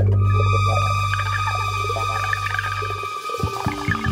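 Live band playing, with an electric bass holding a long low note under steady high sustained tones and busier playing in between; the low note breaks off about three seconds in and a new one comes in.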